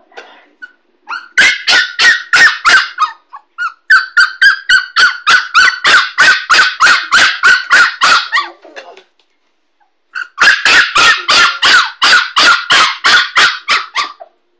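A 6½-week-old Kooikerhondje puppy yapping in quick runs of high-pitched barks, about four or five a second, in three bursts with short pauses between.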